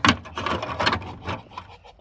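A knock, then a hand tool scraping repeatedly over a hard, gritty surface in several quick strokes.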